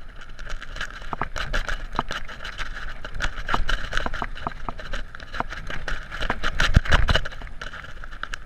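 Mountain bike riding fast down a rough dirt trail: a steady buzzing rattle from the bike, broken by many sharp clicks and knocks as it hits bumps, over a low rumble. A heavier thump comes about seven seconds in.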